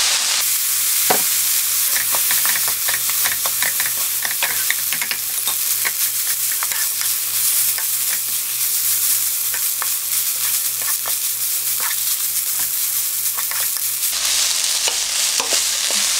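Seaweed stems, onion and carrot sizzling over high heat in a nonstick wok, with the frequent clicks and scrapes of a spatula stir-frying them.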